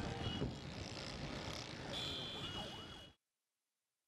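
City street traffic noise with a faint wavering, siren-like tone among it, cutting off suddenly about three seconds in.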